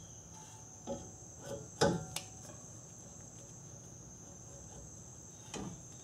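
A few light metallic clicks and knocks from brake caliper parts being handled and fitted, the sharpest about two seconds in, over a steady faint high-pitched background tone.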